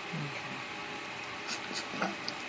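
Open telephone conference line hissing steadily, with a faint low voice sound near the start and a few soft clicks about a second and a half in.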